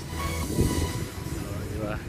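Background music fading out, then a low rumbling noise with a louder bump about half a second in.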